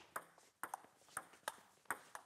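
Table tennis ball clicking off rubber paddles and the table in a quick doubles rally, about seven sharp clicks in two seconds.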